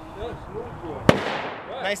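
A single gunshot elsewhere on the firing range about a second in, with a short echoing tail; a man's voice is heard around it.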